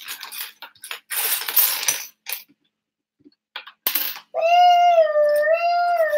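Loose plastic LEGO bricks clicking and rattling as a hand rummages through a pile of pieces on a wooden table, with a burst of clattering about a second in. Near the end comes one long, slightly wavering, high-pitched vocal note.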